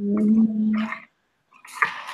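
A person's voice holding a steady low hum for about a second, followed by a few clicks near the end.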